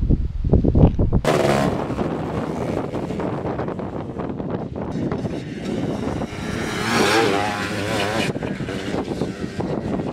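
Quad bike (ATV) engines running as the quads ride past on a gravel track, the engine note rising and falling as they rev, loudest about seven seconds in. Before that, for about the first second, a low rumble and knocks of wind and handling on the camera mic, cut off suddenly.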